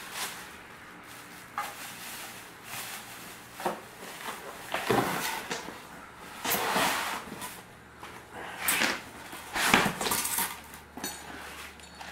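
Plastic wrapping crinkling and cardboard rustling as a new boxed small engine is unwrapped by hand, in irregular bursts.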